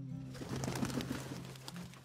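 Birds calling, with dove-like cooing about half a second to a second in, over a held low note of music that fades away.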